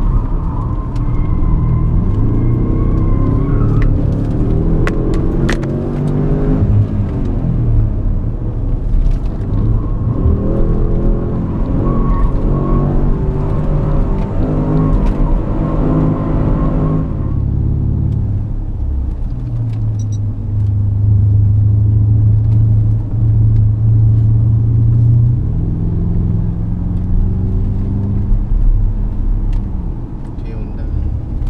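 Porsche Cayenne Turbo's twin-turbo V8, heard from inside the cabin, accelerating hard: its pitch climbs, drops back at a gear change and climbs again, then falls away about 17 seconds in. It holds a steady lower note for several seconds and starts rising again near the end, with a thin high whine over it in the first three seconds.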